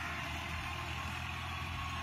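Tractor engine running steadily, a low even hum, while a rotary tiller behind it works the soil.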